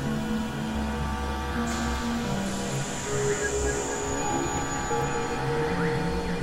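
Experimental synthesizer drone music: layered sustained tones over low bass notes that shift every second or so. A high hissing tone swells in under two seconds in and fades away by about the fifth second.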